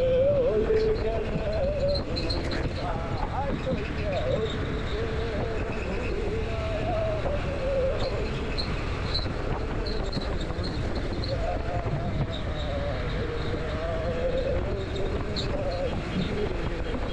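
Motorcycle engine running under way, its note rising and falling a little with the throttle, with wind noise rushing over the helmet-mounted microphone.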